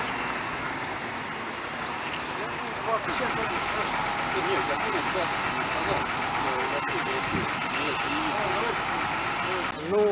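Street traffic noise with a steady vehicle engine hum, a thin steady whine joining about three seconds in, and indistinct voices in the background.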